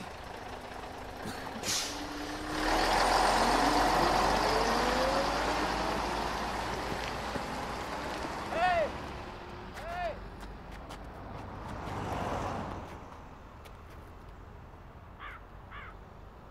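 A diesel city bus pulls away: a burst of air hiss, then the engine note rises as it accelerates and slowly fades, swelling again briefly later on. A crow caws twice, about a second apart, partway through, and faint calls follow near the end.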